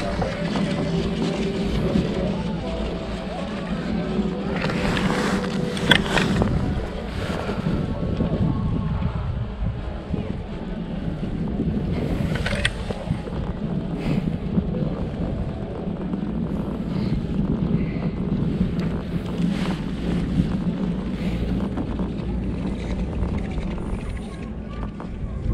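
Steady wind rumble on the microphone of a rider on a fixed-clip Riblet double chairlift, with a few short clicks and clacks from the lift scattered through the ride.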